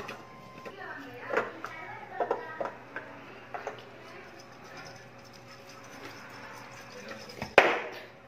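A glass jar with a metal screw lid being handled and the lid screwed on, with a child's faint voice early on, then one sharp knock near the end.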